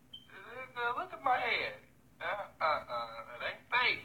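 A man talking in short phrases, recorded on a phone, with the upper frequencies cut off.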